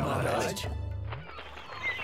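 Cartoon soundtrack: a brief burst of overlapping, gliding sounds in the first half-second, then a low held music note that fades quieter, with a short rising high tone near the end.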